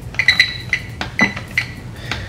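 TBS Tango radio transmitter giving short, high electronic beeps, about six in two seconds, with light clicks as its scroll wheel is turned and pressed to step through the menu.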